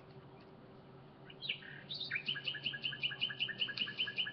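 A small bird chirping: a few quick high notes about a second in, then an even run of short high chirps, about six a second, from halfway through.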